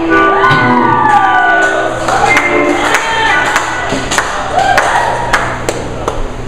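Live band music with gliding, sliding high tones, a long falling one in the first second or so, then held tones, over scattered sharp percussive hits, with crowd noise from the audience.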